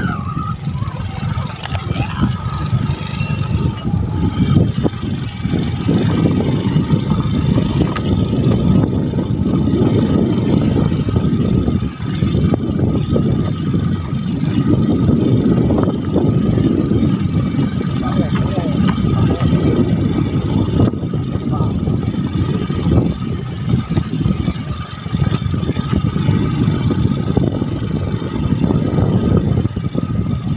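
Small motorcycle engine running as the bike rides along a rough dirt trail, with wind rushing over the microphone; the low rumble surges and dips throughout.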